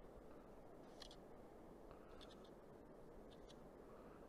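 Near silence: the faint steady murmur of the river, with a few faint short ticks and scratches about one, two and three and a half seconds in as the fly line is handled at the reel.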